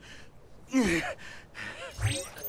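A cartoon character's wordless vocal exclamations. A loud cry falls in pitch about three quarters of a second in, and a shorter cry comes near the end.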